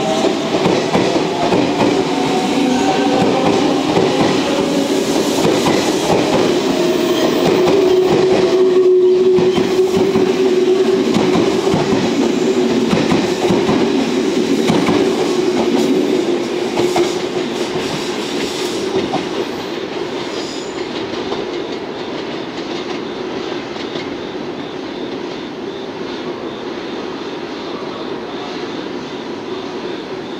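A ten-car JR Central 383 series limited express electric train pulling out past the platform, running with a steady whine and clattering wheels. It fades from about seventeen seconds in as the last cars go by.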